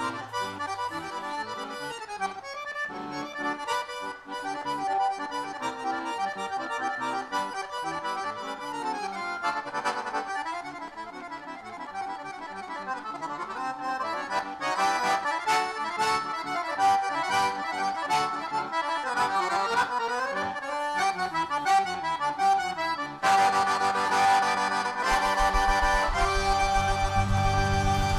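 Piano accordion playing a fast forró melody with quick runs up and down. Sharp percussive hits join about halfway. Near the end the band comes in louder, with bass underneath.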